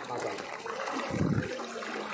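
Floodwater rushing and sloshing steadily as someone wades through it, with a short, louder low slosh just past a second in.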